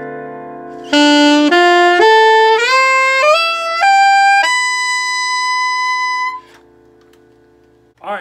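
Alto saxophone playing an ascending arpeggio of about seven notes, climbing from B through a B minor seventh chord and its Dorian extensions to the raised sixth. The top note is held for about two seconds and then stops. A sustained piano chord rings faintly underneath.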